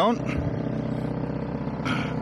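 Narrowboat engine idling steadily, a low even drone.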